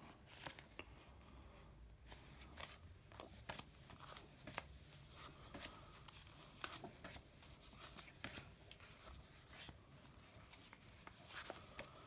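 Faint rustling and soft scattered ticks of old paper envelopes being handled: covers lifted off and slid across a stack, one after another.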